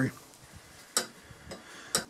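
Two light, sharp clicks about a second apart from hands handling the tuning capacitor's shaft on the steel radio chassis.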